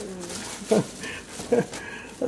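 Thin plastic bag rustling as it is pulled off a boxed RC car, with a few short murmured, laugh-like voice sounds over it.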